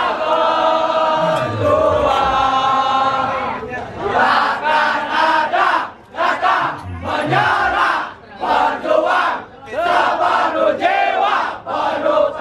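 A crowd of football supporters singing in unison in celebration of a win. They hold long sung notes for the first few seconds, then break into short, rhythmic chanted phrases with brief gaps between them.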